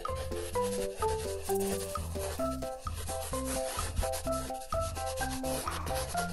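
Paintbrush bristles rubbing and scrubbing on paper in short strokes, over background music with a simple note-by-note melody and bass line.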